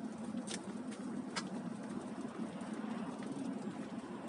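Steady road noise inside a moving car: tyres on a wet, slushy road over a low engine hum, with two sharp clicks about half a second and a second and a half in.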